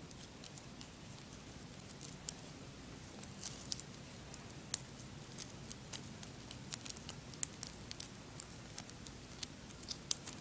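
Faint, irregular small clicks of plastic kandi beads knocking together as a beaded strip on stretchy cord is pulled tight and handled, with a few sharper clicks scattered through.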